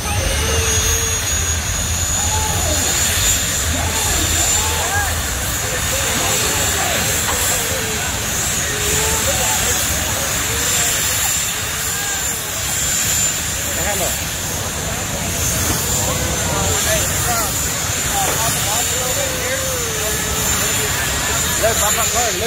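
Crowd chatter over a steady, loud engine roar with a high-pitched whine, from cars staged at a drag strip's start line.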